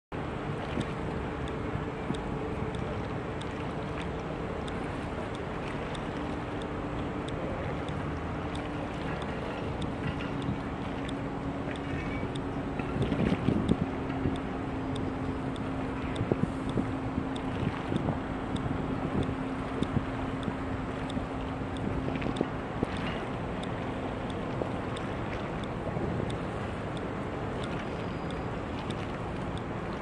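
Steady low engine hum from the icebreaker Shirase and its tugboats, under a constant rush of wind on the microphone. A cluster of louder knocks and gusts comes about 13 seconds in, with a few smaller ones in the seconds after.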